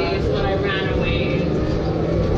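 Ride noise inside a moving Proterra BE40 battery-electric bus: a steady low rumble, with people's voices talking over it.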